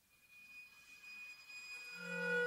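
A high, steady pure tone swelling in softly from silence, joined near the end by further sustained tones lower down: a contemporary chamber ensemble playing.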